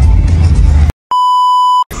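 Test-pattern tone laid over colour bars: a single steady beep at about 1 kHz lasting under a second, starting and stopping abruptly. It comes just after a loud low rumble cuts off suddenly about a second in.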